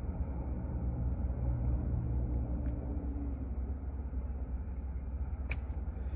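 Car idling: a steady low rumble heard inside the cabin, with one sharp click about five and a half seconds in.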